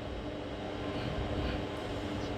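Steady background room noise, a low rumble and hiss with no distinct events, heard through the talk's microphone.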